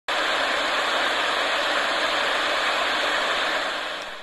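Television static hiss: steady white noise that cuts in at once and fades out near the end.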